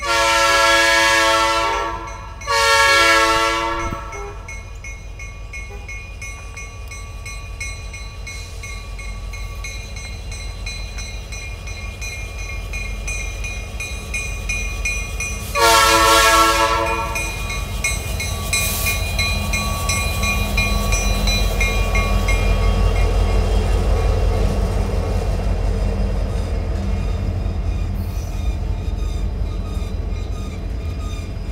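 Diesel locomotive horn sounding two long blasts back to back, then a third long blast about 16 seconds in as the locomotive draws level. After that, the locomotive's engine and the freight train's wheels rumble louder as the slow train rolls past.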